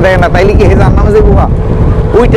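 A man talking in Bengali over the steady low rumble of a river launch's engine.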